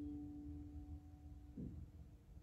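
Quiet, slow background music: one held note fades out about one and a half seconds in, and a new note is struck near the end.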